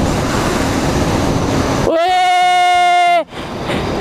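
Wind rushing over the microphone while riding an electric motorcycle, with no engine sound under it. About two seconds in, a loud tone held on one steady pitch cuts in over the wind for just over a second.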